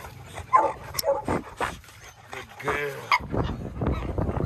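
Excited dogs whining and yipping: a few short high cries, then one longer whine about three seconds in, followed by steadier noise.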